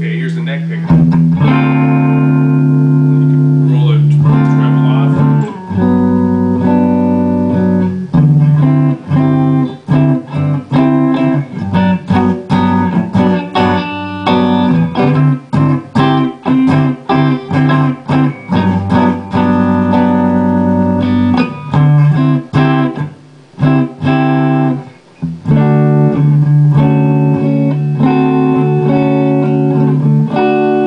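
2003 PRS Custom 22 Artist electric guitar with Dragon II pickups, played loud through an amplifier: notes and chords held for a second or two from about a second in, then choppy riffs with many quick stops from about eight seconds in, and held chords again near the end.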